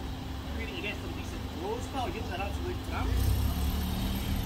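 A motor vehicle engine running with a steady low hum, under faint voices in the background. The low rumble grows louder about three seconds in.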